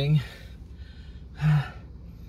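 A man's breathy sigh: one short voiced "hah" about one and a half seconds in, from a man who has just called himself starving.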